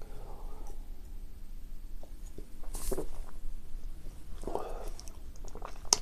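A man sipping beer from a glass at the start, followed by quiet mouth sounds and a short breath as he tastes it, with a brief murmur a little past the middle.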